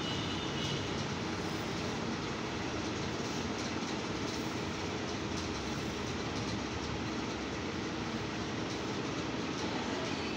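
Steady background noise with a faint low hum, even in level throughout, with no distinct impacts or voices standing out.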